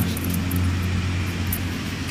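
Steady low rumble of street traffic, with no sudden events.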